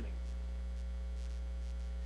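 Steady low electrical mains hum, unchanging, with a few fainter steady tones above it.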